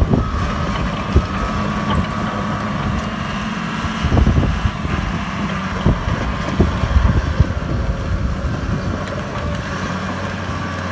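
Caterpillar D3G XL crawler dozer running steadily as it drives and turns, with several sharp clanks and knocks from the machine, the loudest about four seconds in and in a cluster between six and seven and a half seconds.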